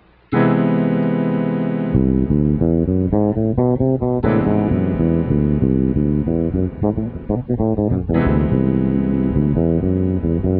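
Electric bass guitar playing a Lydian sharp-five scale line over a held C major seventh sharp five chord. The chord is struck three times, about four seconds apart, and quick stepping bass notes run over it from about two seconds in.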